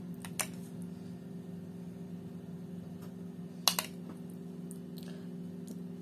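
Metal teaspoon clinking lightly against crockery while sauce is spooned out: a couple of small clicks near the start and one sharper clink a little past halfway, over a steady low hum.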